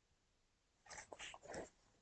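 Near silence: room tone, with a few faint, brief sounds about a second in.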